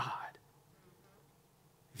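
A man's spoken word trails off, then near silence: room tone for over a second before he speaks again at the very end.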